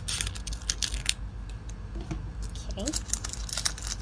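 Plastic-and-paper blister pack of a microneedling nano cartridge being torn open and handled: a run of crinkles, tearing and small plastic clicks.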